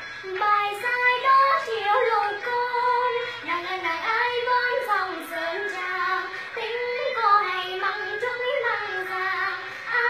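A young girl singing solo, a Vietnamese hát văn–style folk song, her voice bending and ornamenting the melody in long, continuous phrases.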